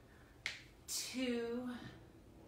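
A single sharp click, then a woman's voice saying one short word that starts with a hiss.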